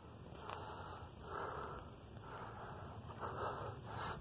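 Faint breathing close to the microphone, in soft swells about once a second.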